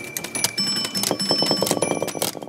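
Sound effect for an animated logo: bright, bell-like tones held steady over a quick run of clicks, with no speech.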